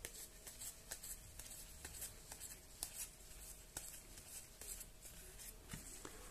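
Faint, irregular soft clicks and ticks of trading cards being thumbed through one by one and slid apart by gloved hands.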